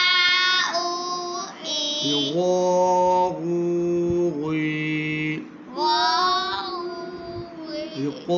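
A single voice chanting Arabic letter-syllables with long drawn-out vowels in a steady sing-song, each syllable held for about a second: ʿā, ʿū, ʿī, then ghā, ghū, ghī. This is Noorani Qaida recitation drill of the long vowels (huruf-e-madd).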